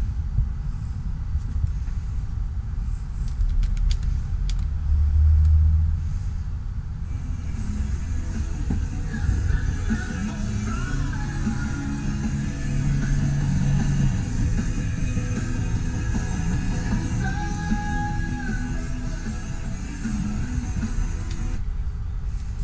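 Music playing from a caravan's stereo head unit through its ceiling-mounted speakers, with strong bass throughout and a melody coming in about seven seconds in.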